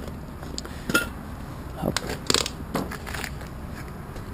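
Several short clinks and knocks of camping gear being handled, with a fabric cool bag being picked up and moved, over a steady low hiss.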